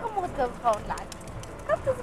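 Speech only: a woman talking, with a short pause in the middle.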